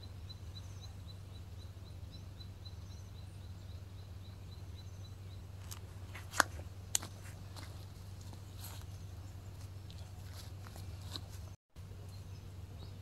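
Outdoor countryside ambience: a faint, high ticking call repeats evenly about four times a second for the first five seconds. Then come a few sharp clicks, two louder ones just past the middle.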